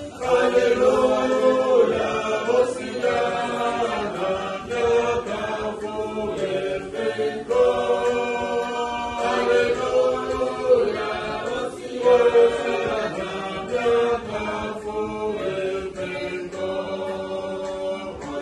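A recording of a group of people singing a worship song together, many voices in chorus, with phrases rising and falling and short breaths between them.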